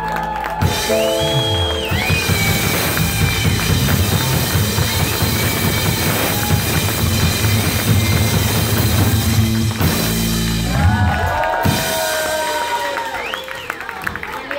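A rock band playing live with electric guitars and a drum kit, the drums keeping a steady beat under the guitars. About ten seconds in the full band drops away, leaving a few held guitar notes.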